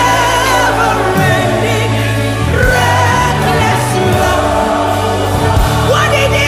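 A congregation and worship leaders sing a contemporary gospel worship song together as a choir, over held bass and keyboard-like chords from a band.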